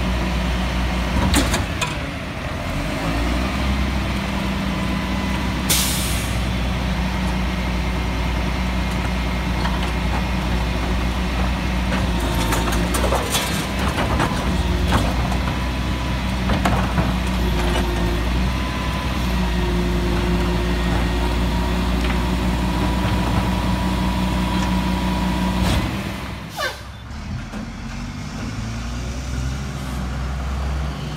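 Old Mack rear-load garbage truck's diesel engine running steadily while the Leach body's cart tipper is worked, with a short hiss of air about six seconds in and a few clanks. Near the end the sound drops to a quieter truck engine.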